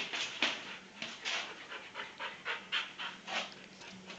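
A dog panting quickly and steadily, about three to four breaths a second.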